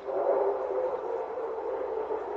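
A steady, sustained low musical tone from a radio-drama scene-transition cue, holding one chord-like pitch for about two seconds.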